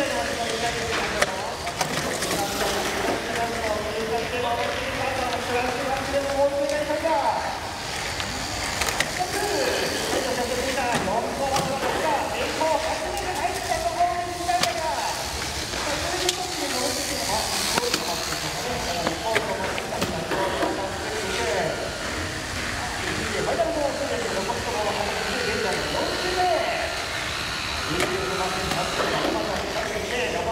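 Indistinct overlapping voices of people in a large indoor hall, with a steady hiss of background noise.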